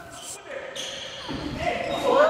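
Basketball being played in an echoing gym hall: the ball bouncing and players calling out to each other across the court, the calls coming in the second half.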